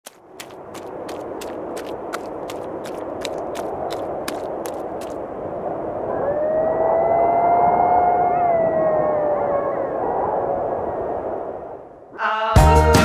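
Wind-like rushing with sharp ticks about three times a second that stop about five seconds in, then a single long canine howl that rises, holds with a slight waver, and slowly falls away.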